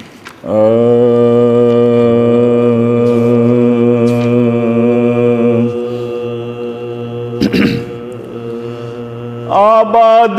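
Men's voices holding one long, steady drone note as the supporting chorus of a soz (Shia elegy chant), a little weaker after about six seconds. A brief noisy knock comes near the end, then the lead voice enters with a new rising phrase.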